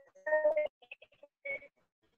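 Choppy, broken-up audio from a frozen video-call connection: short fragments of a flat, buzzy steady-pitched tone cut in and out, then the sound drops out in the second half.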